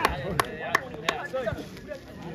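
Hand claps, about three a second, dying out near the end, over men's shouts.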